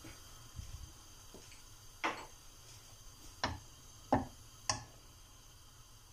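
Butter starting to melt in a hot nonstick frying pan, giving four short sharp pops spread over a few seconds, after a soft low thump near the start.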